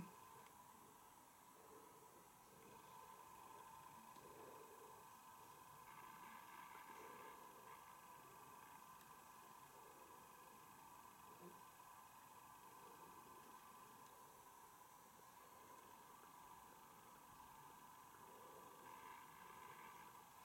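Near silence: faint room tone with a steady high-pitched hum.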